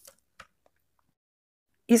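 Two faint light clicks, the second about half a second in: a plastic set square being laid against a ruler on drawing paper.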